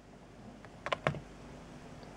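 A few light clicks a little under a second in, from a glass nail polish bottle being picked up and handled among the others; otherwise quiet room tone.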